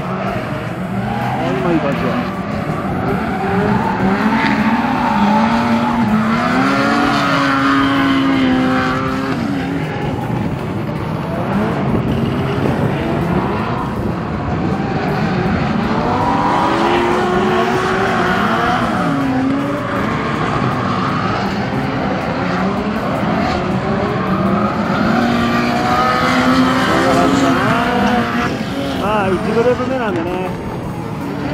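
Drift cars sliding through the course: high-revving engines rising and falling in pitch as the throttle is worked, with tyres squealing and skidding. It swells in three main surges as the cars come through.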